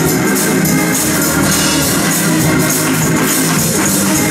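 Live gospel praise music from a church band, with drums, keyboard and hand-clapping keeping a steady beat.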